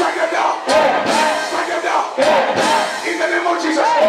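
A congregation praying aloud together, many voices shouting at once over held keyboard chords.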